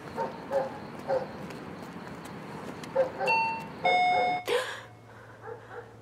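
Two-note doorbell chime, a higher note then a lower one, about three seconds in.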